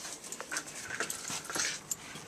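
A dog close to the microphone making a few short, soft whines, among scattered small clicks and rustles.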